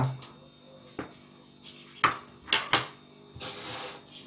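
A metal fork clinking sharply against a ceramic bowl about five times, then a short rustle of hands working dry biscuit crumbs near the end.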